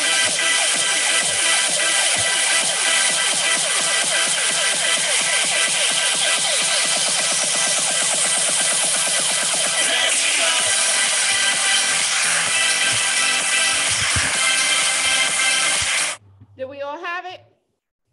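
Electronic hip hop dance track with a steady beat and sung vocals, speeding up in one part, with a rising sweep midway; it cuts off suddenly near the end, and a woman then speaks briefly.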